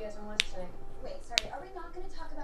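A person cracking their knuckles: two sharp pops about a second apart.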